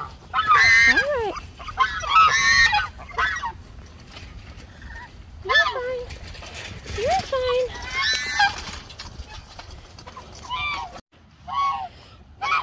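A small flock of domestic geese honking: repeated short calls every second or two, several rising in pitch.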